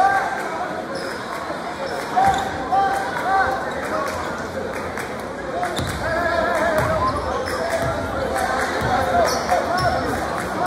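Basketball dribbled on a hardwood gym floor, the bounces coming at about two a second and clearest in the second half, over the chatter of a crowd of spectators.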